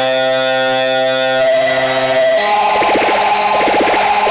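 Eurorack modular synthesizer tone run through a Dreadbox Phaser module whose knobs are being turned: a steady pitched tone rich in overtones, which about two seconds in abruptly changes to a fast, rattling flutter.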